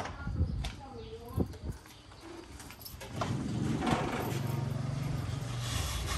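A few knocks and clunks as someone climbs into a van's cab across a metal trailer deck, then, from about three seconds in, a vehicle engine running steadily, growing a little louder.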